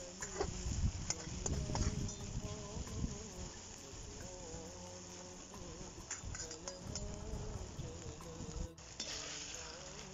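Beef pieces sizzling in hot oil in an aluminium kazan, with a slotted metal spoon stirring and scraping against the pot, the stirring loudest in the first few seconds. A buzzing tone that wavers in pitch runs under the sizzle.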